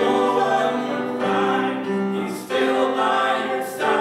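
Male and female voices singing a sacred song together, with piano accompaniment. They hold long notes, with a brief pause for breath about halfway through.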